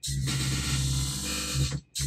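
A track playing through a Pioneer DDJ-FLX4 in rekordbox with the Cyber Jet smart effect engaged from the CFX knob, which lays a jet-style sweep as a steady wash over the music. The result is a hot mess. It cuts off just before the end.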